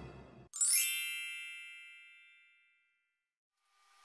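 A bright chime sound effect: a quick upward sparkling sweep about half a second in, then a cluster of ringing tones that fade away over about two seconds. It comes as the last of a spooky music cue dies out.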